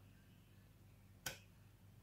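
Near silence, with a single short click about a second and a quarter in.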